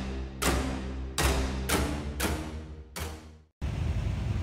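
Intro music with a slow, heavy beat, a strong hit roughly every half second to three-quarters of a second. The music cuts off suddenly near the end.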